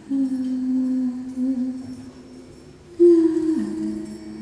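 A singer humming long, low held notes in an avant-garde vocal performance: one note held for over a second, then a louder one starting about three seconds in that slides down in pitch half a second later.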